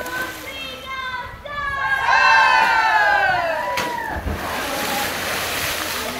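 A dolphin leaping from a show pool and crashing back in with a big splash, followed by a steady hiss of falling spray and churned water. Just before the splash, many spectators' voices rise in shouts and cheers, the loudest part.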